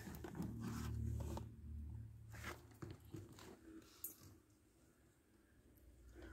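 Faint rustling and scraping handling noise, with a low rumble in the first second and a half and a few small clicks, fading to near silence about four seconds in.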